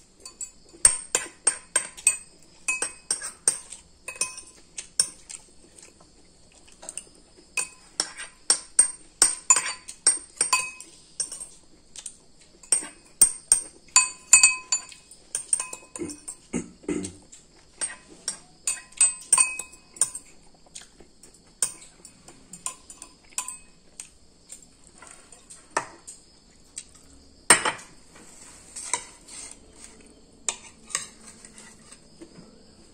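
A metal spoon and fork scraping and clinking against a ceramic rice bowl while eating, in quick, irregular ringing clicks with a few pauses and one louder knock near the end.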